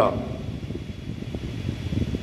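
A pause in a man's speech, filled by steady low background noise; the tail of his last word falls at the very start.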